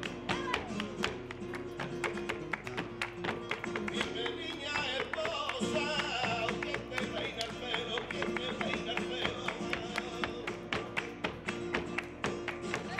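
Flamenco performance: a man's voice singing over guitar, with fast, steady palmas (rhythmic hand-clapping) throughout.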